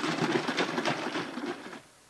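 Water with aluminium sulfate sloshing in a plastic jug shaken hard by hand, a fast, even run of strokes as the coagulant solution is mixed. It cuts off suddenly near the end.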